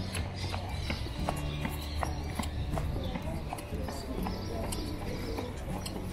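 Footsteps of a person walking at a steady pace on paved promenade tiles, about two steps a second, over a low steady background hum and distant voices.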